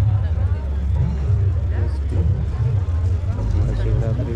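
People talking, their words not clear, over a strong, steady low rumble.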